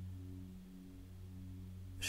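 Faint background meditation music: a low, steady drone of sustained tones.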